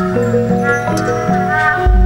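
Sundanese gamelan accompaniment for a wayang golek show: metallophone notes step through a melody, with a high, gliding, voice-like line above them. A deep low tone sets in near the end.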